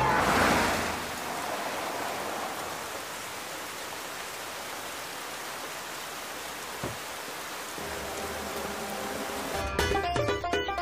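Steady, even hiss of rain falling on wet pavement, after a burst of crowd cheering fades out in the first second. One faint knock comes about seven seconds in, and music fades in toward the end.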